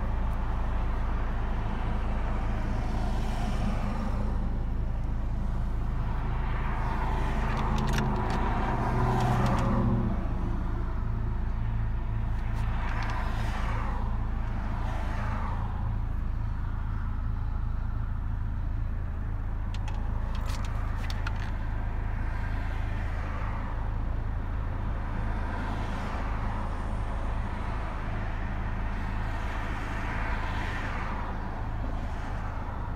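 Car cabin noise while driving: a steady low engine and road rumble, with an engine drone that eases off about ten seconds in and repeated swells of noise rising and falling.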